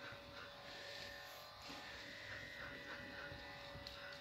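Quiet room tone with a faint steady electrical hum.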